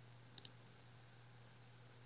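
A computer mouse button clicked, two sharp ticks in quick succession about half a second in, closing a browser tab.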